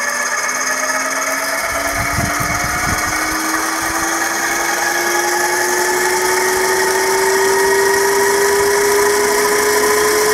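Small three-phase electric motor on a variable frequency drive, whining and rising steadily in pitch as it spins up a coupled three-phase motor used as a generator.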